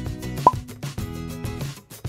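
Background music with a regular beat, and one short, sharp plop about half a second in.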